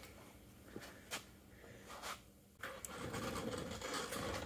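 Faint workshop room noise with a few light clicks; about two and a half seconds in, a louder steady hum with hiss takes over.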